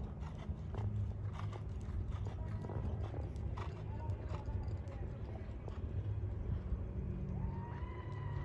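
A horse trotting on sand arena footing: faint, irregular hoof thuds over a steady low rumble. A thin sustained tone begins near the end.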